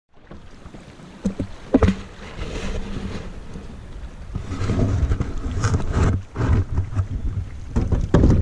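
Kayak paddling: paddle strokes in the water alongside the hull, with a couple of sharp knocks in the first two seconds. From about halfway, wind buffets the microphone with an uneven low rumble.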